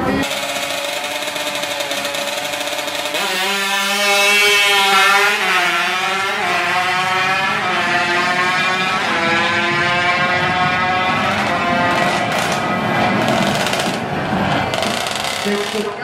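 A heavily tuned Honda Wave drag bike's single-cylinder four-stroke engine holds a steady note at the start line, then launches and accelerates hard. Its pitch climbs and drops back several times as it shifts up through the gears, and the note becomes less distinct near the end.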